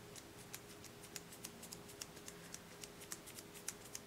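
Faint, irregular light ticks, a few a second, from the small plastic bottle and gloved hand as silver marbling paint is dripped onto water, over a faint steady room hum.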